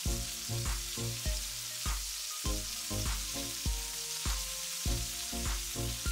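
Chicken breast pieces sizzling in hot oil in a heavy pan, searing and browning, a steady frying hiss. Soft background music with a regular beat plays over it.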